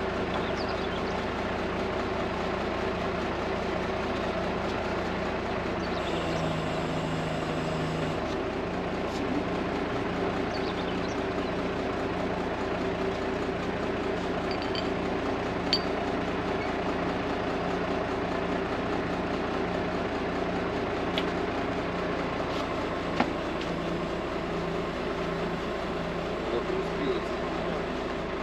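Crane truck's diesel engine running at a steady speed to drive its loader crane, a constant drone. Its tone changes for about two seconds, about six seconds in. A few light metallic clinks are heard, near the middle and later.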